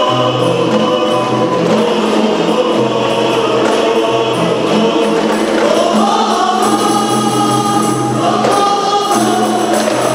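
A men's rebana group singing a qasidah song in unison, accompanied by rebana frame drums. The voices hold long notes, and the melody steps up about halfway through.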